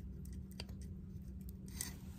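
Hot soldering iron tip cutting into a plastic model-kit part: scattered small clicks and crackles, with a brief louder scrape near the end as the tip comes out of the plastic.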